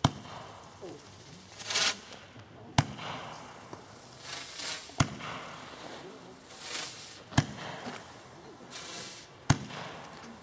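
Jorge firework ('Lion') firing shot after shot. Each shot is a short rising whoosh followed by a sharp bang, repeating about every two and a half seconds, with five bangs in all.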